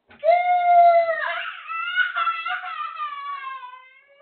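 A young child's long, high-pitched wail, held steady for about a second and then sliding downward in pitch as it fades toward the end.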